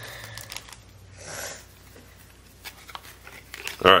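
Soft rustle of a freshly opened foil trading-card pack and its cards being handled, one brief swell about a second in, then a few faint light clicks.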